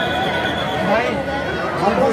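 A dense crowd of voices shouting and cheering on a Dahi Handi human pyramid as it is built, with a thin, steady high tone over it for about the first second.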